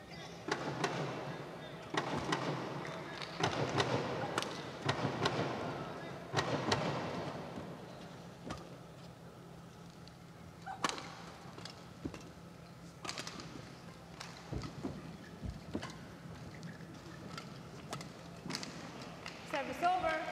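Badminton rally: sharp, irregular strikes of rackets on the shuttlecock over arena background noise, which is louder in the first seven seconds or so.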